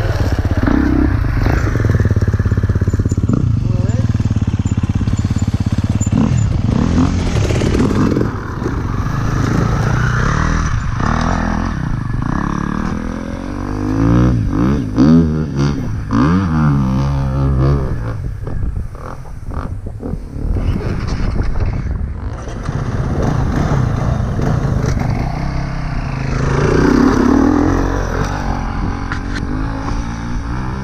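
Off-road dirt bike engines idling and being revved, their pitch rising and falling as the throttle is worked, loudest and most varied about halfway through.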